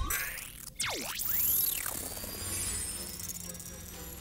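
Electronic sci-fi sound effects of a tiny drone taking off and scanning with lasers: a sudden start, then several tones sweeping down and arcing up and down, with a high shimmering whir. Film score plays underneath.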